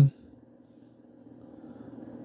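Faint steady low hum, growing slightly louder over the two seconds, in an otherwise quiet room; the tail of a spoken word is at the very start.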